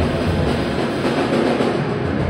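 Live band playing loud, a dense, noisy wall of sound. The low drum beats fall away about half a second in.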